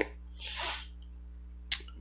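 A single soft breath from the speaker in a pause between sentences, with a brief mouth click about three-quarters of the way in, over a low steady hum.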